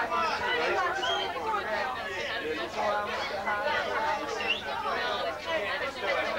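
People talking in conversation, with voices overlapping; the words are not clear.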